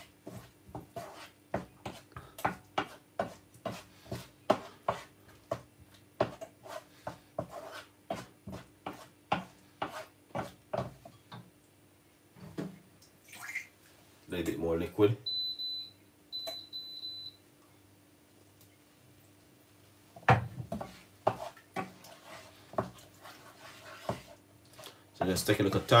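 Wooden spoon stirring a thick sauce in a non-stick frying pan: a run of soft knocks and scrapes about twice a second, over a low steady hum. About halfway through come two high electronic beeps, each about a second long.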